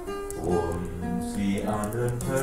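Acoustic guitar played solo, plucked notes ringing over lower bass notes.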